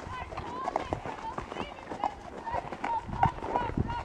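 Hooves of saddle horses walking in single file on a dirt trail: an uneven run of clip-clop footfalls, with voices talking among the riders.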